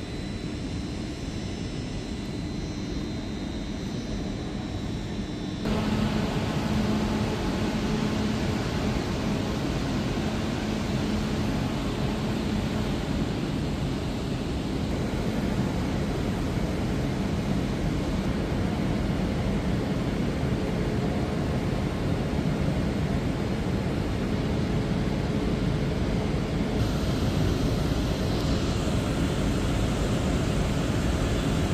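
Passenger train running beside the platform: a steady roar of engine and equipment noise with a low hum, which steps up suddenly about six seconds in and then holds steady.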